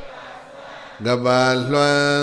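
A Buddhist monk chanting in long, drawn-out held notes. After a brief pause the chant picks up again about a second in.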